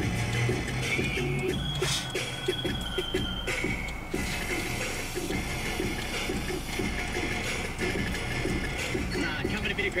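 Music playing on a car radio, heard inside the car's cabin, with a steady beat of short repeated notes.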